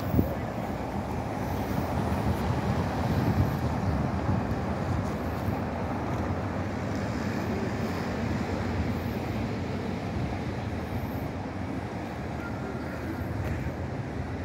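City street ambience: a steady rumble of road traffic from passing cars, a little louder about two to four seconds in, with a brief knock right at the start.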